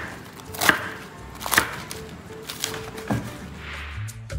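Chef's knife chopping through Chinese white cabbage onto a wooden cutting board: a handful of separate crisp strikes, about one a second.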